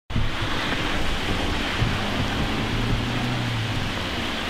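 Steady hiss of rain falling, with a faint low hum in the second half.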